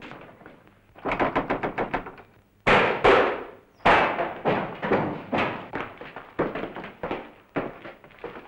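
Rapid bursts of sharp bangs, several a second, with a few heavier strikes about three and four seconds in, each dying away in a short echo.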